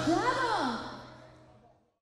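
A short logo sound effect: a few swooping tones that rise and fall in pitch, with echo, fading out about a second and a half in.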